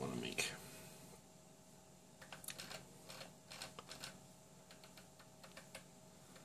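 Faint, sharp clicks of a computer mouse in use, coming in quick little clusters from about two seconds in, with one more near the end.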